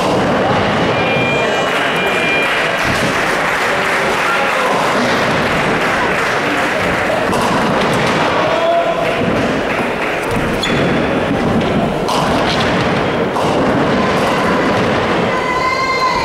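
Classic ninepin bowling: heavy balls thudding onto the lanes and rolling, and pins being knocked down, under the steady loud din of a busy bowling hall.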